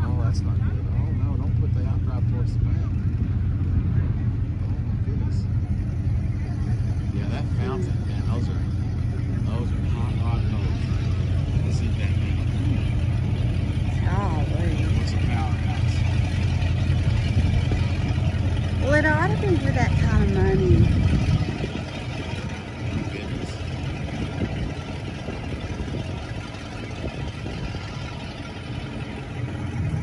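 Steady low engine rumble from an idling motor, which drops away abruptly about two-thirds of the way through, with faint distant voices.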